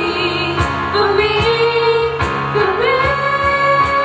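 Two female voices singing a slow ballad, sliding into long held notes, over a sustained low accompaniment with soft, regular cajón beats.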